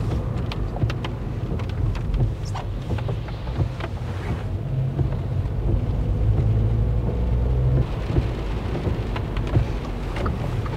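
Inside a vehicle driving on a wet road: a steady low engine and tyre rumble with the hiss of wet tyres and rain, and scattered small ticks and taps.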